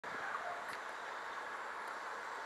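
Steady distant vehicle noise, an even hiss with no distinct engine note.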